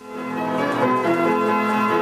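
Imhof & Mukle Badenia II orchestrion, a roll-operated mechanical instrument with pipes and percussion, starting to play a tune, the music coming in right at the start.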